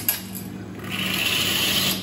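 A click as a button is pressed on a commercial espresso machine, then hot water hissing out of the machine into a shot glass to rinse it, growing stronger about a second in and running steadily.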